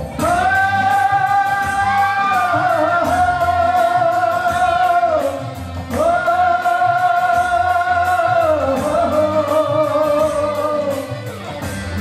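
A man singing a Nepali pop song through a microphone and PA over backing music, echoing in a hall. He holds two long notes, the first about five seconds long and the second starting about six seconds in, then sings shorter phrases.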